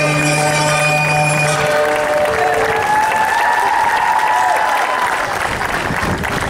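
Folk dance music with a held low drone ends about two seconds in, and audience applause follows. A long tone rises and falls over the applause near the middle.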